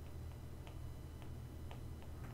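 Faint, irregularly spaced light ticks of a stylus tapping and writing on a tablet screen, about five in two seconds, over a steady low hum.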